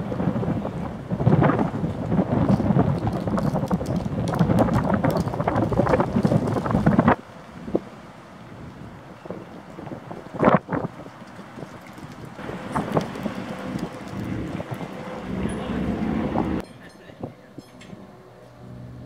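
Wind buffeting the microphone outdoors: a gusty, crackling rumble, loudest for the first seven seconds, then cutting off suddenly. A single sharp gust comes about ten seconds in, and another gusty stretch cuts off shortly before the end.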